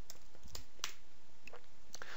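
Computer keyboard keystrokes: a handful of separate sharp clicks spread over two seconds as a short number is typed, over a steady background hiss.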